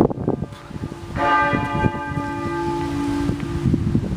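Church bells ringing from the cathedral's bell tower, with a fresh strike a little over a second in that rings on and slowly fades.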